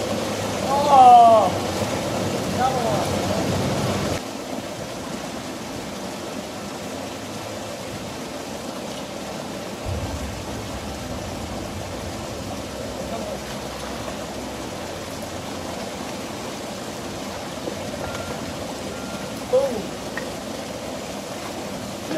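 Creek water running steadily over a shallow riffle, louder for the first four seconds. A couple of short excited vocal exclamations come about a second in and again shortly after.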